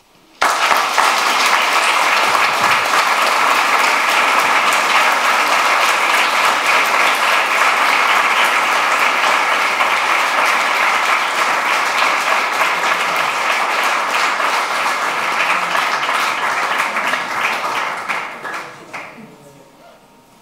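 Audience applauding, a dense steady clapping that starts suddenly and dies away near the end.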